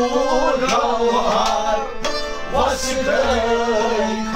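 Men singing a Kashmiri folk song in a wavering, ornamented melody, accompanied by hand strokes on a nout, a large clay-pot drum.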